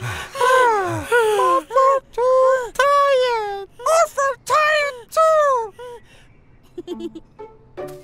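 Cartoon creature voices making tired, whining non-word sounds: a run of short calls that rise and fall in pitch, a few of them drawn out, dying away about six seconds in, with only faint small sounds after.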